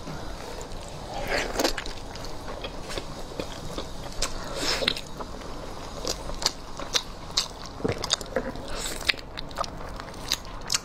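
Eating a braised pig's trotter: wet, sticky biting and chewing on the gelatinous skin and meat, with short sharp smacks and clicks scattered irregularly throughout.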